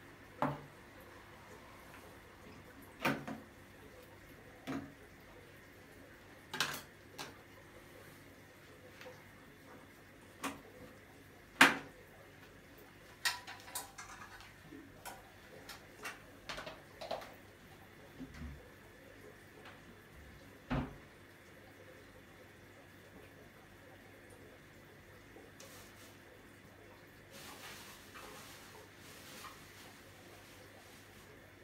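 Someone rummaging through household things, irregular knocks, clicks and clatters of objects being moved and set down, the loudest a sharp knock near the middle; the clatter thins out over the last third, over a faint steady low hum.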